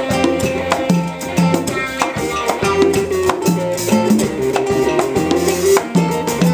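Live band playing an upbeat groove: electric guitar over a drum kit, with a repeating low bass line underneath.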